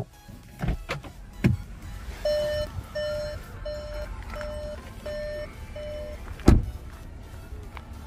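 Cupra Formentor's warning chime beeping six times at an even pace, sounding while the dashboard prompts to put the gear selector in P. A couple of knocks come before it, and the driver's door shuts with a loud thump about six and a half seconds in.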